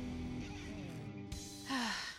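Background music with held notes slowly fading away, and a drawn-out falling tone near the end.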